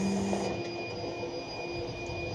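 Forklift running, a steady machine whine with a thin high tone held throughout. A lower hum drops out about half a second in.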